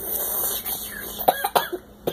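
A child coughing: a rough breathy start, then two short coughs about a second and a half in, from the burn of extra-hot Cheetos eaten without a drink.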